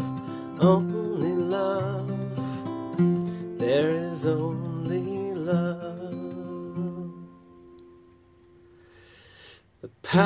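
A slow song on strummed acoustic guitar with a voice singing held, wavering notes. The music dies away about seven and a half seconds in and starts again just at the end.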